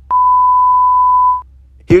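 Color-bars test tone: one steady, pure beep lasting about a second and a quarter, starting with a click and cutting off sharply.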